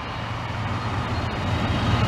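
Road traffic: a passing vehicle's engine and tyre noise, growing steadily louder as it approaches.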